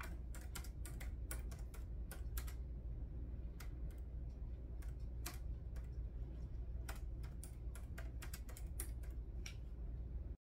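Typing on a laptop keyboard: irregular key clicks in short runs with pauses, fairly faint, over a low steady hum.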